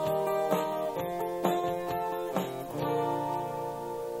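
Solo guitar playing a song's closing phrase: plucked notes and chords about once or twice a second, then a final chord left ringing from about three seconds in.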